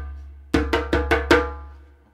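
Djembe slaps: five quick, sharp strokes played with alternating hands, right-left-right-left-right, at about five a second, starting about half a second in, with the drum's ringing fading away afterwards.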